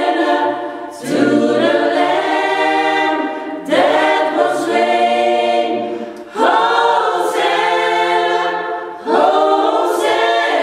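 A small choir rehearsing a cappella, singing in phrases of about two and a half seconds. Each phrase starts strongly and tails off before the next one begins.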